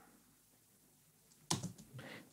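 A few quick computer keyboard key clicks about a second and a half in.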